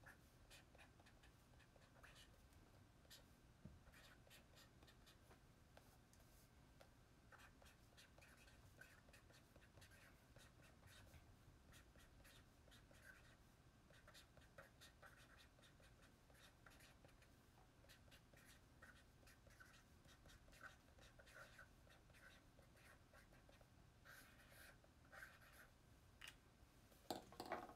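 Near silence with the faint, scattered scratching of a pen writing on paper.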